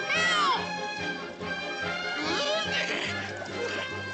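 Film score music with a young cartoon fish's high, gliding cries of fright, one at the start and more about two to three seconds in.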